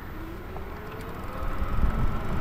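Bafang Ultra Max 1000 W mid-drive motor on a fat-tyre e-bike starting to whine as the rider pushes off from a standstill under pedal assist, its pitch rising. Low wind rumble on the microphone grows louder near the end.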